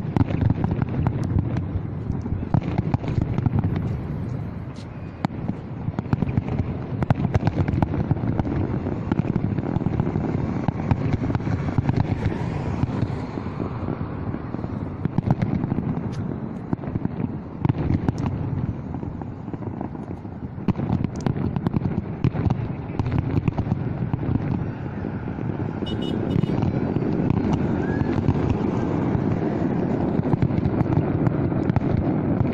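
Aerial fireworks display going off without a pause: many bangs and crackles overlapping one another.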